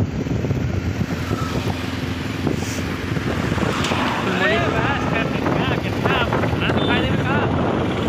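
Steady road and traffic noise heard from a moving vehicle, with wind on the microphone. From about four seconds in, voices talk over it.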